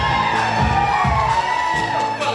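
Live pit band playing an upbeat musical-theatre number with a steady low beat, long notes held over it, and the bass dropping out near the end.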